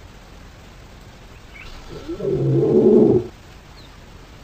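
A lioness gives one low call lasting about a second, starting about two seconds in. It is a hungry mother calling out to the pride.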